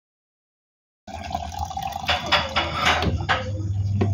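Water running and splashing, as from a tap into a sink, starting suddenly about a second in, with a low steady hum that grows louder near the end.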